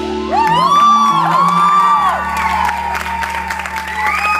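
The band's last chord ringing out while the audience whoops in several rising-and-falling calls, then claps, the clapping growing through the second half.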